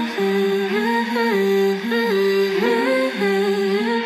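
Pop song outro with the beat and bass dropped out, leaving a wordless hummed melody: slow held notes that step up and down in pitch.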